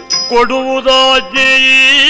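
Yakshagana singing: a male singer's voice comes in about a third of a second in and holds long, gently bending notes over a steady drone.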